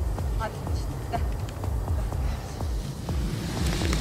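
Outdoor wind rumbling on the microphone, an uneven low buffeting, with a couple of faint distant words about half a second and a second in.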